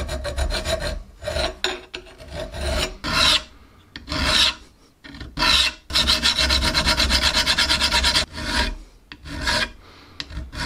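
Flat hand file scraping across the steel of an old adjustable wrench in a series of strokes: quick short strokes at the start and again from about six to eight seconds in, with single slower strokes and short pauses between.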